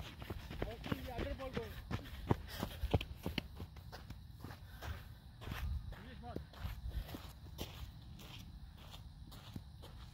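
Faint distant voices with a few scattered sharp taps, over a steady low rumble of wind on the microphone.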